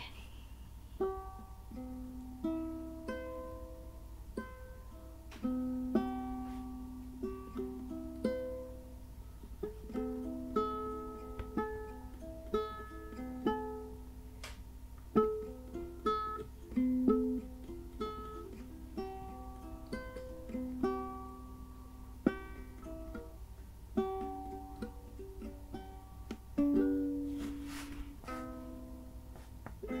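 Solo ukulele, fingerpicked: a slow melody of single plucked notes and occasional chords, each note ringing and fading.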